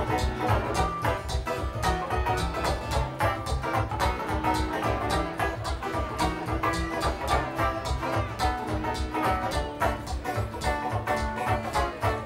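Bluegrass band playing an instrumental passage: fast banjo picking and strummed acoustic guitar over a driving bass pulse from a homemade gas-tank bass.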